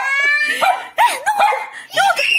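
Small dog barking several times in quick, high-pitched yips.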